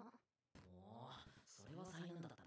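Faint anime dialogue: after half a second of near silence, one character speaks a line quietly.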